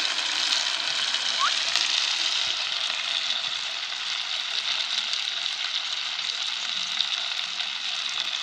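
Porcini mushrooms frying in a large cast-iron kazan over a wood fire: a steady sizzle.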